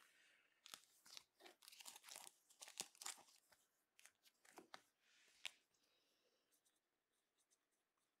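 Faint crinkling and crackling of plastic card sleeves being handled, a quick run of small crackles that dies away after about five seconds into faint scattered ticks.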